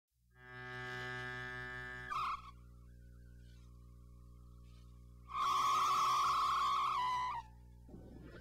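Electronic synthesizer music. A held drone fades in and sounds for about two seconds, followed by a short louder blip and then quieter sustained tones. A louder, harsher tone holds from about five and a half to seven and a half seconds in.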